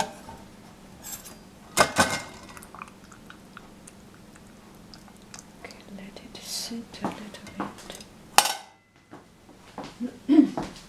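Dishes and kitchen utensils clinking and knocking as they are handled, in a few sharp separate strikes, the loudest about two seconds in and near the end.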